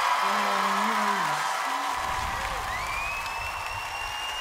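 Studio audience applauding and cheering. A single voice calls out in the first second or so, and a long, shrill whistle rises at about two and a half seconds in and is then held steady.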